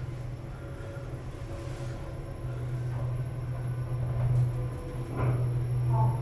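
Kone MonoSpace lift car travelling upward between floors, heard from inside the car: a steady low hum that grows stronger about halfway through.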